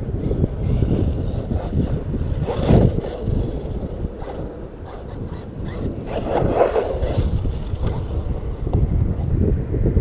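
Wind buffeting the microphone as a steady rumble, with two louder rushes about three seconds in and again after six seconds.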